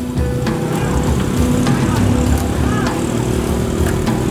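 Small single-cylinder motorcycle engine of a tricycle running steadily as it pulls the loaded sidecar through traffic, heard from inside the covered sidecar.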